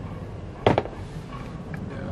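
Two quick sharp knocks, the second just after the first, about two-thirds of a second in, as a sneaker is set down on a cardboard shoebox.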